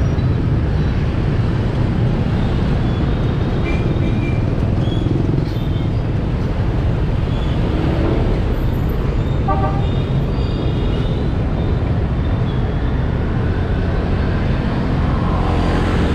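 Motorbike riding through dense motorbike and truck traffic: a steady low rumble of engines and road noise. A short horn toot sounds about halfway through.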